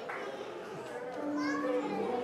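Many voices calling out at once in prayer and praise, overlapping so that no words come through, with some higher-pitched voices among them.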